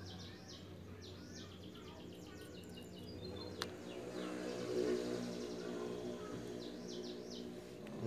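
Small birds chirping in repeated short, falling calls over a steady low hum, which grows louder after about four seconds. A single sharp click comes a little past three and a half seconds.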